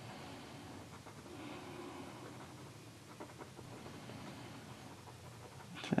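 Faint scratching of a glitter gel pen colouring in on paper.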